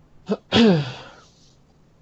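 A man clears his throat loudly: a brief catch, then a longer, harsher burst whose pitch falls away over about half a second.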